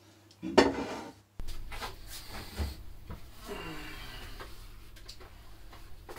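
A few light knocks and clatter of objects being handled, over a steady low hum that sets in about a second and a half in.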